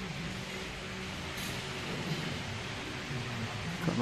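Steady background noise with a faint low hum, with no distinct events.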